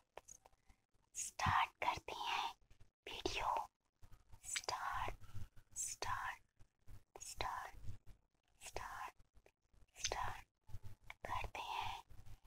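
Close-up inaudible ASMR whispering: short breathy phrases with pauses, about one a second.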